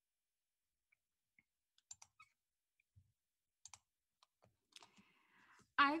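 Near silence broken by a few faint, scattered clicks, then a short soft hiss just before speech resumes at the very end.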